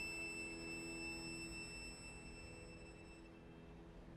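The last soft sustained note of violin and piano dying away into the hall's reverberation, fading out over about three seconds to near silence.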